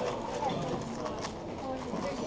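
A Shadow M 6x6 speedcube being turned rapidly by hand, its plastic layers clacking in quick, irregular clicks, with people talking in the background.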